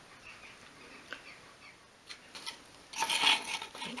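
Faint handling sounds of fingers pressing a small glued wooden assembly together, with a few light ticks, then a brief rubbing scuff of hands on the wood about three seconds in.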